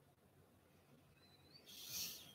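Near silence, room tone, then a brief soft rushing sound that swells near the end.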